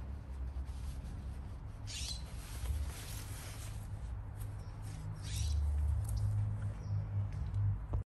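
Grooming cape rustling as it is pulled off and put down on a table, two short swishes about two and five seconds in, over a steady low rumble.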